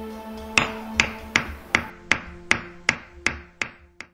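Hammer strikes at a steady pace, about nine blows at roughly two and a half a second, each ringing briefly, starting under a second in, over held music notes. Everything stops abruptly at the very end.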